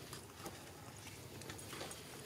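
Faint, irregular smacking clicks of macaque mouth sounds at close range, over a low steady rumble.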